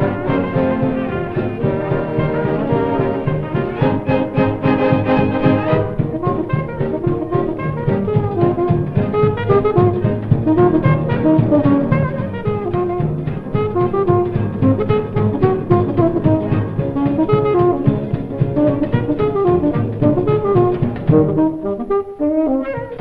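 1920s dance band playing a jazz number with brass, saxophones, tuba and string bass. For the first six seconds the band holds full brass chords; then a moving saxophone line takes over over a steady beat.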